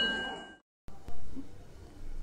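A temple bell's ring dying away, its steady metallic tones fading until the sound cuts off abruptly about half a second in. Faint background noise follows.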